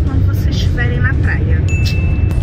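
Steady low road rumble inside a moving car's cabin, with a woman's voice over it. A brief thin, steady high tone sounds near the end.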